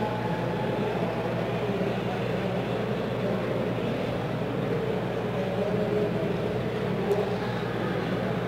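Steady background din of a large event hall, a continuous rumbling noise with a low electrical hum under it.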